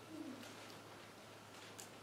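Quiet room with a steady low electrical hum, faint rustles and light clicks of Bible pages being turned, and a brief low falling tone just after the start.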